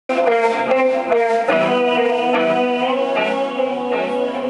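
Live band's electric guitar playing a run of ringing chords through an amplifier, the notes changing every half second or so and dying away near the end.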